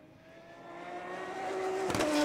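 A group of GT race cars' engines approaching and growing steadily louder, their pitch rising slightly as they accelerate.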